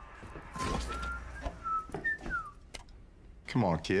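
A person whistling a few short notes that slide up and down in pitch, with a few faint knocks in between.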